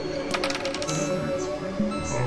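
Experimental electronic music: held synthesizer drone tones, with a quick run of sharp clicks about half a second in.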